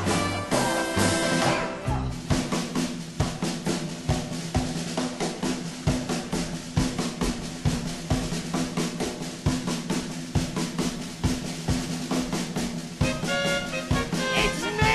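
A show band's drum kit playing a fast drum break: rapid, even snare strokes about five a second with bass drum hits and a steady low note held underneath. About a second before the end the full band comes back in with horns.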